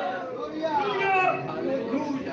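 Indistinct chatter of several voices speaking over one another.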